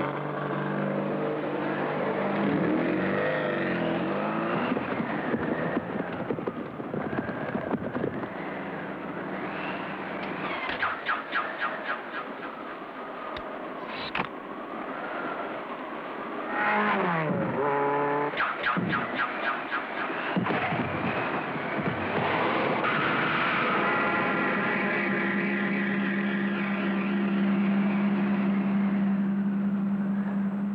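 Cartoon race-car engine sound effects for the Mach 5 running hard, its pitch swooping up and down a little past the middle, with skidding tyres. The engine note holds steady over the last several seconds.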